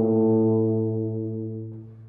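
Tuba holding one long low note that fades away near the end.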